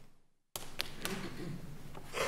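Courtroom room noise that cuts out briefly, then returns with three light taps or knocks about half a second apart.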